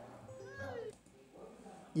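Faint high voice sounds gliding up and down in pitch, like giggling, in the first second, then fading to quiet.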